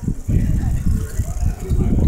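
Irregular low rumble of wind buffeting the microphone while riding along with a group of cyclists, with faint voices of riders underneath.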